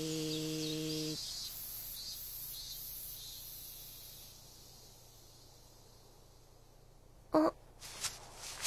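A cartoon creature's short, steady low hum lasting about a second and a half. Behind it, forest ambience of high chirping birds and insects fades away about four seconds in. A brief, sharp pitched sound comes near the end.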